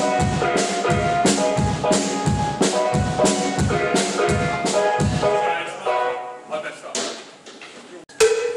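Live band playing: a drum kit keeps a steady beat under held keyboard chords, then the playing thins out and dies away in the last couple of seconds.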